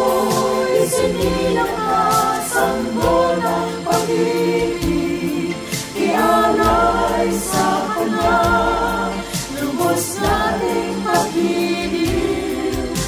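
A small mixed choir of women's and men's voices singing a Tagalog Christmas hymn in harmony. The phrases are made of held notes with vibrato, with brief breaths between them.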